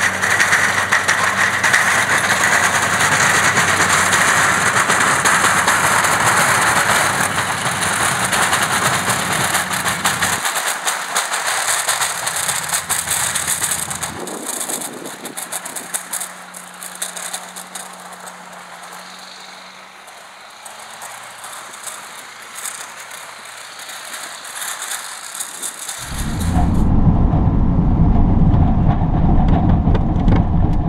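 A Chevrolet Silverado 3500 dually with a 6.6 L Duramax LB7 diesel, plowing snow. At first it is heard from a distance as a steady noisy rush with a low hum, which drops away about ten seconds in and goes quieter. Near the end it cuts to inside the cab, where the diesel drone is loud and low.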